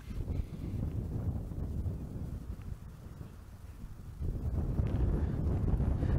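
Wind buffeting the microphone: a low, noisy rumble that grows louder about four seconds in.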